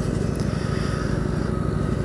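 A 250 cc motorcycle's engine running steadily at low speed in light traffic, with wind noise on a helmet-mounted microphone.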